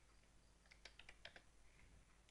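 Faint computer keyboard keystrokes, a quick run of about half a dozen clicks about a second in, over near silence.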